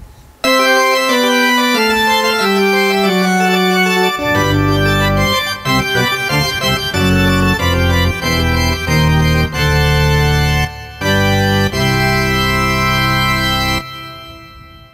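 Korg Triton LE synthesizer playing its 'Pipe Mixture' pipe-organ patch, a bright, brilliant pipe organ tone. It opens with a slow single line of held notes stepping downward, then full chords with deep bass notes come in about four seconds in, and it ends on a held chord that fades away.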